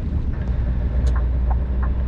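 Heavy truck's diesel engine running under way at low speed, a steady low drone heard from inside the cab. A few faint light ticks come in over it in the second half.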